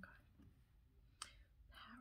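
Near silence with one sharp, close-up click about a second and a quarter in, and a soft breathy rustle near the end.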